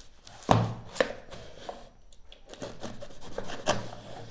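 A cardboard shipping box being handled on a tabletop. There are two sharp knocks about half a second and a second in, then cardboard rubbing and scraping, and another knock near the end.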